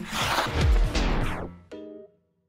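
Outro logo sound effect: a whoosh sweeping downward with a deep boom under it, then a sharp hit near the end that rings briefly and fades out.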